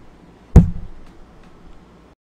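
A single sharp knock about half a second in, fading quickly, followed by a few faint ticks.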